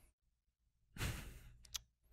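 A person sighs, a soft breath out about a second in that fades within half a second, followed by a single light click near the end.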